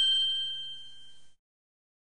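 The ringing tail of a bell-like ding sound effect, a few high, steady tones fading away and cutting off about a second and a quarter in.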